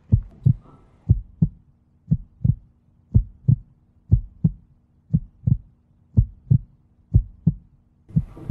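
Heartbeat sound effect: paired low thumps, lub-dub, about one beat a second, a suspense cue for the moment of decision. A faint steady low drone runs underneath from about a second in.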